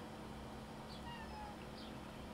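A faint, short animal call about a second in, slightly falling in pitch, over a low steady room hum.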